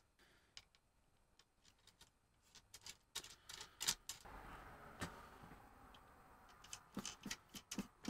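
Faint scattered clicks and light taps of small metal bolts and nuts being handled and fitted into clear acrylic frame parts, in small clusters, a few about three seconds in and more near the end.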